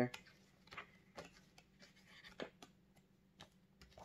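Faint, scattered soft clicks and taps of tarot cards being handled and moved on a tabletop, a handful of light ticks spread over a few seconds.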